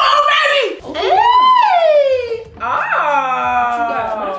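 A person laughing hard, breaking into two long wailing cries: the first rises and then falls in pitch, the second slides down.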